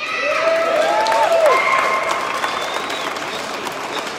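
Audience applauding, swelling quickly at the start and loudest about a second and a half in, with a few voices calling out in the first two seconds.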